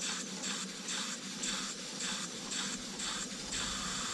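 Small German slide-valve steam engine running on wet, low-pressure steam, its exhaust chuffing in regular hissing puffs about three a second. It seems to be working single-acting only, though it is built double-acting.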